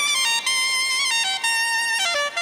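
Soprano saxophone playing a smooth solo melody: a held high note, then a few shorter notes stepping lower.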